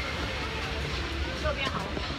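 Steady outdoor background noise with a low rumble, and faint, distant voices about three-quarters of the way through.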